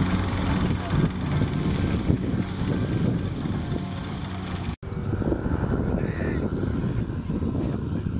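Small piston engine of a homemade micro helicopter idling as its rotor turns, the hum fading over the first few seconds. It breaks off abruptly about five seconds in.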